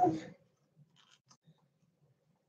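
A spoken word trails off at the very start, then near silence: room tone with a few faint clicks about a second in.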